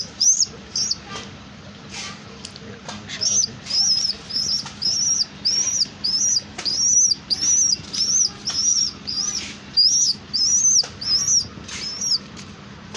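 Pigeon squab giving a run of short, high-pitched squeaky peeps, about two a second, each rising and falling: the begging call of a chick that wants to be fed.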